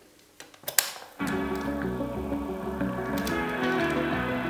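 Mechanical clicks of the piano-key controls on a Sony TC-61 cassette recorder, then a little over a second in, music starts playing back from the cassette through the recorder's built-in speaker and carries on steadily.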